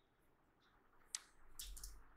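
Near silence: room tone, with one faint short click about a second in and a few faint soft noises near the end.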